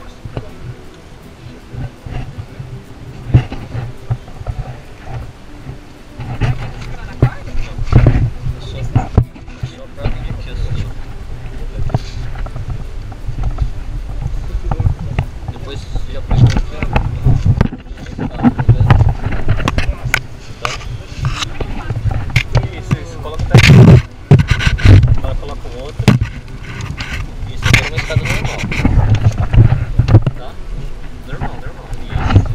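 Wind rumbling on an action camera's microphone, with irregular knocks and bumps from handling as it is carried down a wooden ladder; the loudest bumps come a little after the middle.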